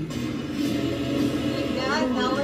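Film trailer soundtrack playing: music with a steady low drone, and a voice rising near the end.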